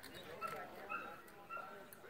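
A dog whining in three short, high whimpers about half a second apart, over a murmur of distant voices.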